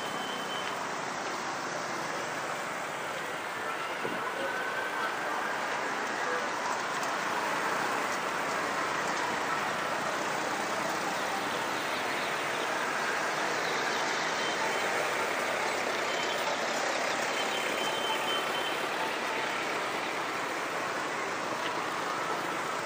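Steady city street traffic noise: motorbikes and cars running along the road, with a few faint brief high tones.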